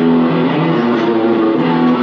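Live band music led by electric guitar, with a man singing along into a microphone.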